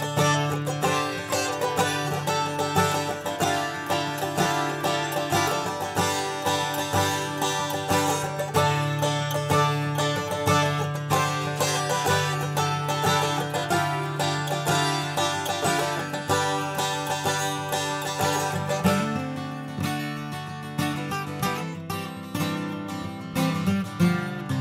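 Instrumental rock music: a picked acoustic guitar plays a quick repeating pattern of plucked notes over a steady low drone. Toward the end the low part starts moving in pitch.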